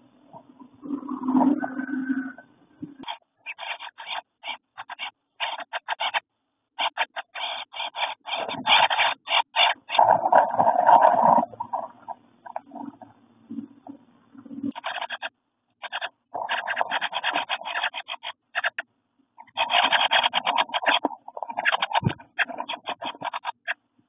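Wren nestlings stirring in a nest box: scratchy rustling and chattering in short choppy runs broken by brief silences, with a quieter stretch a little past the middle.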